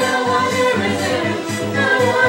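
Karaoke song playing loud over a bar sound system, with several voices singing along together.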